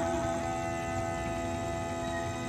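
Bulgarian gaida bagpipe sounding a steady, unchanging drone tone with no melody moving over it.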